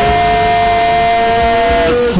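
Electronic keyboard holding a steady two-note chord, the higher note cutting off just before the lower one.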